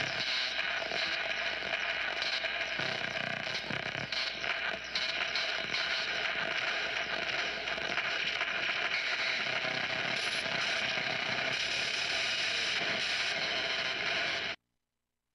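A dense, steady clicking and rattling that sounds mechanical, like a ratchet or gear mechanism, at an even loudness throughout.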